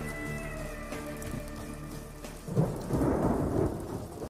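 Thunder and rain closing the song: the last held notes of the music fade out. About two and a half seconds in, a low rumble of thunder rolls in over the rain.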